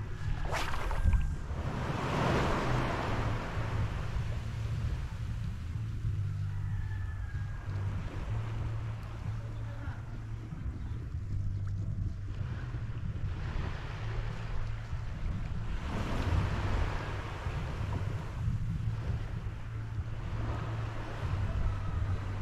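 Wind buffeting the microphone over shallow sea water lapping at the shore. There is a constant low rumble, with louder hissing washes about two seconds in and again around sixteen seconds.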